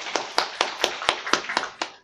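Audience applauding, with a close, sharp clap about four times a second standing out above the rest; the applause stops abruptly just before the end.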